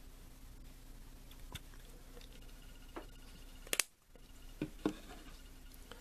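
A few small clicks and knocks of a plastic measuring spoon and container being handled while glycerin is spooned into a plastic tub, the loudest just before the four-second mark and two more close together shortly after, over a low steady hum.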